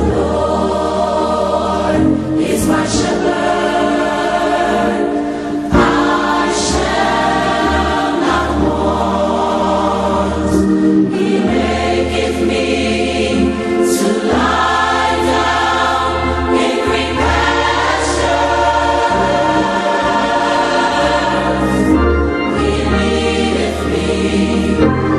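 A choir singing a gospel song over a steady bass accompaniment.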